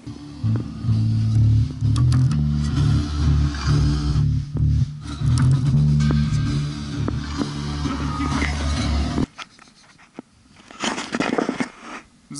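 Electric bass guitar played through an amp, a line of low notes changing pitch, which stops abruptly about nine seconds in.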